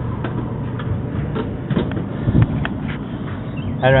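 Gas clothes dryer running with a steady low hum, with scattered light clicks and knocks, a cluster of them about halfway through.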